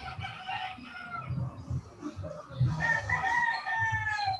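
A rooster crowing, with one long held crow in the second half that falls slightly in pitch as it ends.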